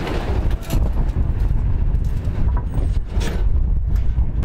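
Strong wind buffeting the microphone, a steady low rumble, with a few brief knocks.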